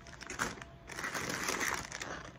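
Plastic snack-chip bags crinkling as they are handled and pulled out of a box: a short burst about half a second in, then a longer, louder stretch of crinkling from about one second on.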